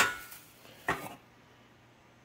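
Bubble wrap rustling, then a single sharp metallic clink about a second in, as 14-gauge steel panels are lifted out of their packing.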